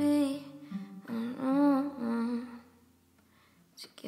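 Female voice humming a wordless, gliding melody for about two and a half seconds, then a pause of about a second of near silence, with a faint click just before the end.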